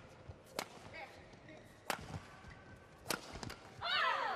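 Badminton rackets hitting the shuttlecock in a doubles rally: three sharp hits about a second and a quarter apart, with a falling squeal at the very end.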